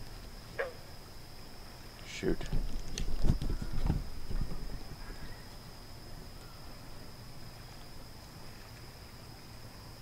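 A steady, thin high-pitched drone of night insects, with a single click about half a second in and a cluster of knocks, rustles and low thumps from about two to four and a half seconds in as fishing line is handled by hand.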